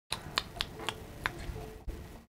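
About five sharp clicks or taps at uneven spacing within the first second and a bit, over faint room hum.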